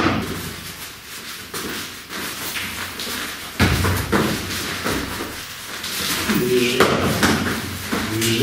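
Scuffling of two people grappling on a training mat: feet shuffling and stepping, clothing rustling, and dull thuds of body contact, the heaviest about halfway through.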